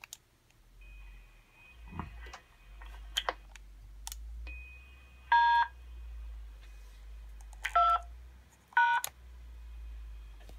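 Three short DTMF dual-tone beeps, the keypad command that sets a SvxLink radio node connecting to an EchoLink station. The first comes about five seconds in and the other two close together near the end, over a faint steady hum and a few light clicks.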